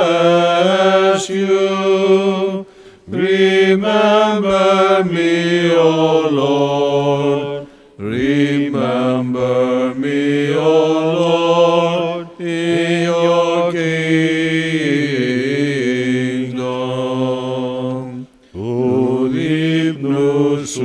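Byzantine chant of the Greek Orthodox liturgy: a melodic vocal line sung over a sustained low drone note (the ison), in long phrases broken by brief pauses every few seconds.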